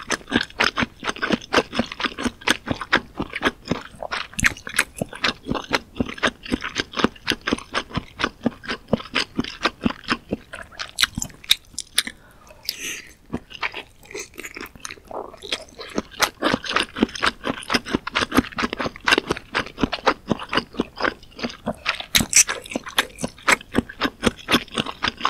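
Close-miked mouth sounds of a person chewing soft, spicy Korean fish cake (eomuk): rapid, wet chewing clicks that ease off for a few seconds in the middle, then pick up again as she bites the next piece.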